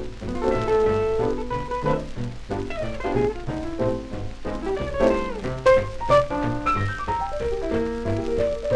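Small swing jazz band (trumpet, tenor sax, piano, electric guitar, string bass and drums) playing an instrumental passage without vocal, from a 1943 78 rpm record.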